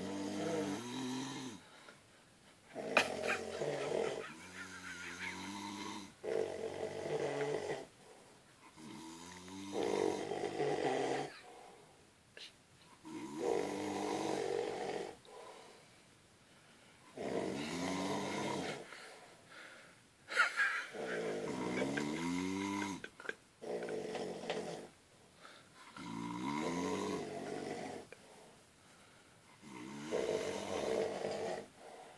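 A sleeping man snoring heavily, one long rattling snore every three to four seconds, about nine in all. Two of the snores open with a sharp catch, and these are the loudest moments.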